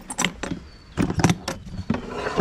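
Black plastic tool box being unlatched and opened: its metal catches snap open and the lid knocks as it is lifted, a string of about half a dozen sharp clicks and knocks.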